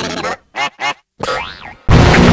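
Digitally warped audio of the Klasky Csupo logo's cartoon sound effects: two short wobbling boings about half a second in, then a zigzag pitch sweep. Near the end a loud, distorted blast starts as the next effect begins.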